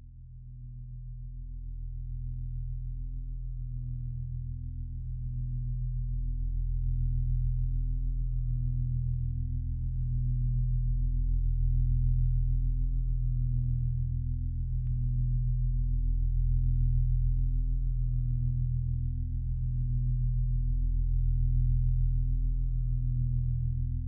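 Low, steady electronic drone of a few held tones that swells up over the first several seconds and then pulses slowly in loudness.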